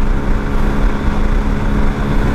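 Hero XPulse 230's single-cylinder engine running steadily at highway cruising speed, about 100 km/h in top gear, with a constant drone and wind noise over the microphone.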